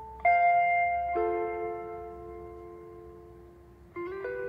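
Instrumental karaoke backing music with no voice: a chord struck about a quarter second in and another about a second in, each ringing out and slowly fading.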